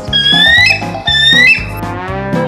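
Background music with a whistle sound effect gliding upward in pitch twice, each rise about half a second long.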